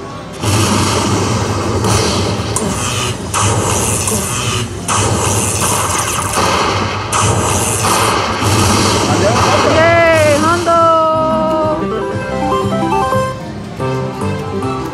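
Lightning Link Happy Lantern slot machine's win celebration: loud crackling lightning effects and fanfare for a bonus win, with a pitched sweep rising and falling about ten seconds in. Near the end it changes to a quick stepped jingle of short tones as the win meter counts up.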